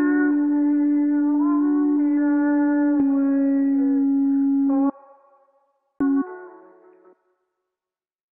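808 bass notes played an octave high in FL Studio, heard as steady sustained tones: one note held about three seconds, then a second, slightly lower note, under a reverb-drenched sample whose melody glides up and down above them. Playback stops about five seconds in, and a short blip of the note about six seconds in fades out in a reverb tail.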